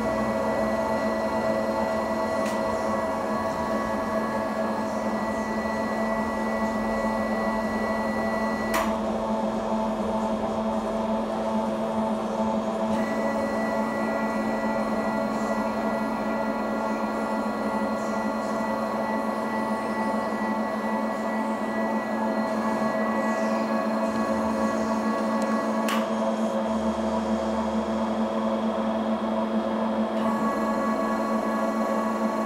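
Container bulk loader running on a dry test: a steady machine hum made of several held tones. The tone mix changes abruptly twice, each time with a brief click.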